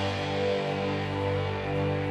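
Live instrumental progressive rock: held chords from synthesizers and electric guitar ringing on steadily, with no drum strikes.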